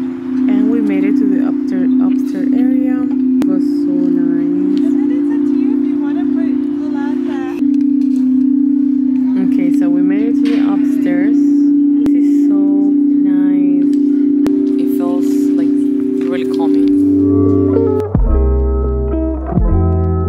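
Crystal singing bowls played with a mallet, holding long, steady, overlapping ringing tones whose pitch changes a few times as different bowls are sounded. Near the end it gives way to guitar music.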